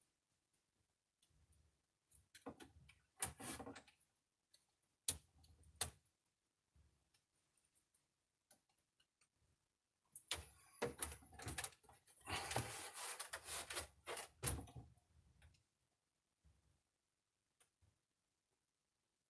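Plastic clicks, knocks and scraping from a flat-screen monitor's casing and parts being handled as it is taken apart. There are a few scattered sharp clicks in the first six seconds, then a denser run of handling noise from about ten to fifteen seconds in.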